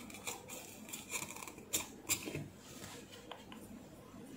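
Copper desoldering braid pressed onto a PCB's solder joints under a soldering iron tip and drawn across them: a series of faint short scrapes and ticks.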